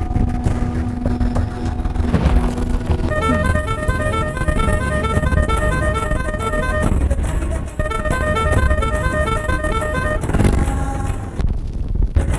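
A vehicle engine rumbling, with a horn sounding in a rapid run of alternating two-pitch beeps. There are two stretches of beeping, from about three seconds in to seven, and again from eight to about ten and a half.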